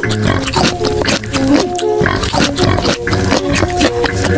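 Close-up mouth sounds of spicy gluten strips (latiao) being stuffed in and chewed: a dense run of wet clicks, smacks and slurps, over background music.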